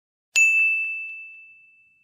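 A single bright bell-like ding, a chime sound effect, struck about a third of a second in and ringing away over about a second and a half, with two faint echoes just after the strike.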